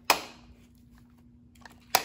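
Two sharp knocks as a child handles a small mirrored disco-ball toy, one just after the start and one near the end, each dying away quickly.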